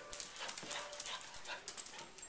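Two dogs playing over a plush toy: panting and scuffling, with many quick light clicks and scrapes of their paws on the hard vinyl floor.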